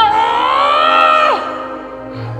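A single long, high-pitched vocal call held for about a second and a half. It rises slightly, then drops away at the end, over steady background music.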